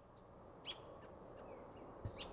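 Faint outdoor ambience with a few short, high bird chirps, the clearest about two-thirds of a second in.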